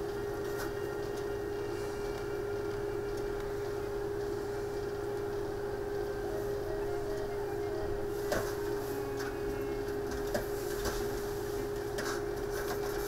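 A steady electrical or machine hum with one constant tone running throughout, with a few faint light clicks in the second half as small metal filigree parts are handled with tweezers.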